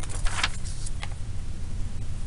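A sheet of paper rustling as it is handled and turned over, ending after about half a second, then one light tap about a second in. A steady low hum runs underneath.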